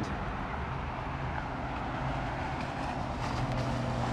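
Steady road traffic noise: a continuous low rumble and hiss of distant cars.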